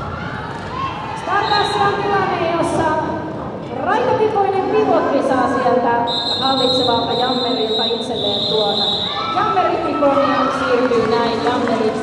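Voices talking in a large hall. About halfway through, a referee's whistle gives one long, high blast of about three seconds.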